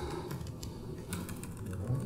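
A few faint keystrokes on a laptop keyboard, over a low room hum.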